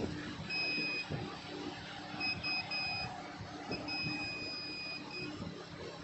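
Digital multimeter's continuity buzzer beeping as the probes touch a shorted line on a phone mainboard: one short beep, a quick run of three, then a longer beep of about a second and a half. The beep marks near-zero resistance, the sign that the 2.8 V line is shorted to ground.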